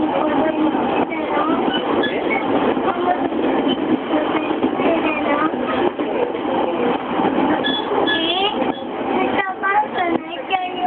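Steady running noise of an E231 series electric commuter train heard from inside the carriage while it is moving, with passengers' voices chattering throughout.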